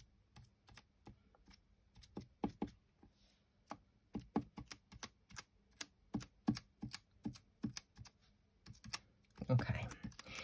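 Light, irregular taps of a small metal tool on card, pressing gold gilding flakes down onto butterfly die-cuts, about two or three taps a second.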